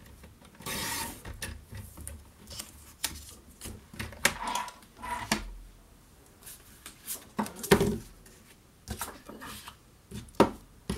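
Stampin' Up! paper trimmer's blade sliding down its track through a sheet of designer paper, a short scraping rasp about half a second in. Then paper is handled and set down, with scattered clicks and rustles and the loudest knock near the end.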